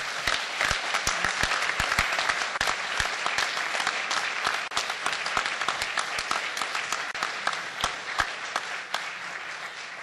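Audience applauding, many hands clapping at once, strong at first and easing off slowly toward the end.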